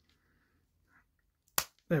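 A single sharp plastic click about a second and a half in: a peg on one part of a plastic combiner robot toy snapping into its connection socket.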